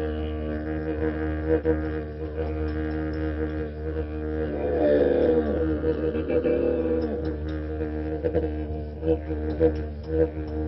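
Compact two-piece wooden travel didgeridoo, its bore carved inside a coiled body, played as a continuous low drone. About halfway through, the tone is shaped into sweeping wah-like changes, and near the end it breaks into rhythmic pulses.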